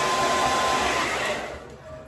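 Hand-held hair dryer blowing air on a section of hair being pulled straight over a round brush: a steady rush of air with a thin whine, fading away in the second half.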